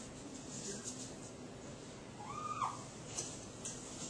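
Dry-erase marker writing on a whiteboard: faint scratchy strokes, with one short squeaky tone rising and falling about two and a half seconds in.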